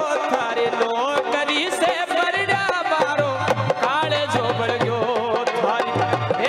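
Live Rajasthani folk music: a dholak-style hand drum keeps a steady repeating beat under a continuous, ornamented melody that bends and wavers in pitch.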